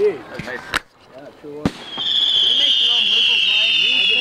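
Aerial firework shells: two sharp bangs about a second apart, then a loud high whistle from about two seconds in, slowly falling in pitch, with people talking faintly underneath.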